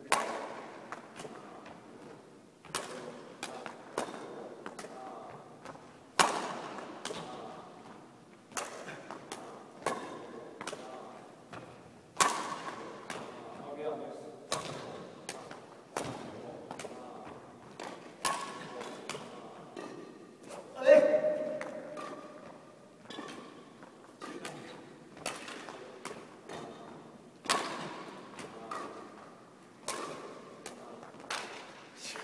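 Badminton racket strings hitting a shuttlecock back and forth in a drill, sharp echoing hits every one to two seconds. About two-thirds of the way through comes the loudest sound, a short pitched one.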